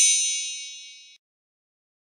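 A bright, bell-like metallic ding ringing out and fading, then cutting off abruptly a little over a second in.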